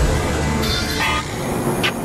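Steady street traffic noise, with a deep falling boom right at the start and a short click near the end.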